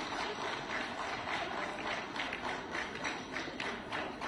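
Many quick, irregular clicks, typical of press camera shutters firing in rapid succession, over a steady background noise.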